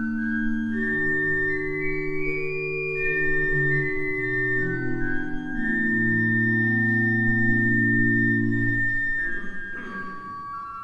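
Church pipe organ playing a hymn in slow, held chords, the notes changing every second or so; the chord releases about nine seconds in before the next notes start.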